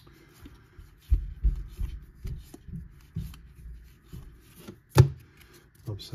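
Trading cards being flipped through by hand, cardstock sliding and tapping against the stack. A run of dull low thumps comes in the first few seconds, and one sharp click about five seconds in.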